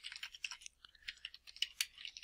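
Computer keyboard typing: a quick, uneven run of faint keystrokes.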